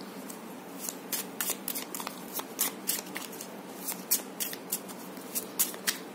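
Hanson-Roberts tarot cards being shuffled overhand by hand: a run of irregular light clicks as packets of cards slide off and tap together.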